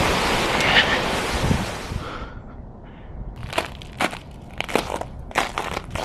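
Fountain water splashing steadily for about two seconds, then cutting off sharply. Then footsteps crunching on packed snow, about five steps at walking pace.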